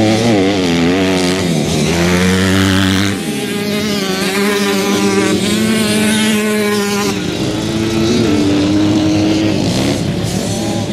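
Several motocross bike engines running together, their pitch wavering up and down as the riders work the throttle, with shifts in pitch about three seconds in and again near seven seconds.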